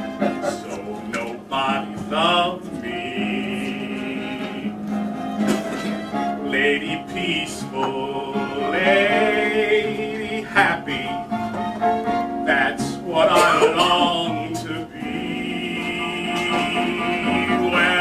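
Solo voice singing a slow show-tune ballad live over instrumental accompaniment, holding several long notes with vibrato.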